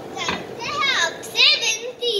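Children's high voices calling out in short bursts on stage.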